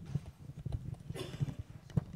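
Microphone handling noise: a run of dull bumps and knocks on a live microphone, with a sharp click near the end, as the microphone is checked after apparently being switched off.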